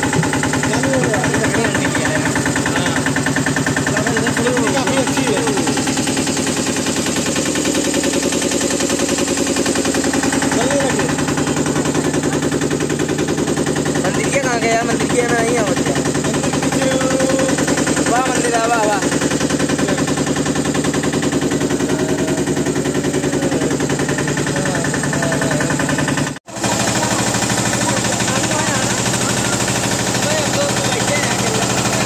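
Motorboat engine running steadily with a rapid, even chugging. Faint voices come through in the middle, and the sound cuts out for an instant near the end.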